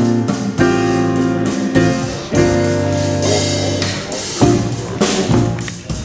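A small jazz band playing: sustained piano chords over electric bass and drums, with cymbal washes now and then.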